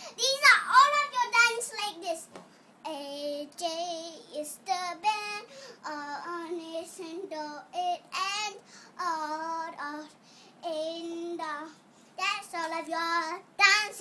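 A young girl singing in short phrases with brief pauses between them, her held notes wavering in pitch.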